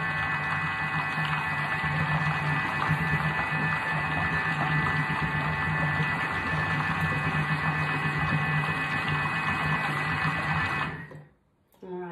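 Thermomix food processor running its blade to blend a thick cauliflower sauce: a steady motor hum with a high whine, cutting off sharply near the end.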